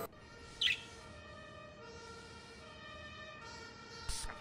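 A single short, sharp bird chirp about half a second in, followed by a quiet run of soft held notes that change pitch every half second or so.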